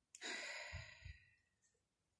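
A woman sighing: one audible breath of about a second that fades away, with two soft low thuds partway through.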